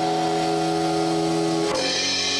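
Live post-rock band playing: electric guitar and bass guitar hold a sustained chord, then move to a new chord near the end, with drums underneath.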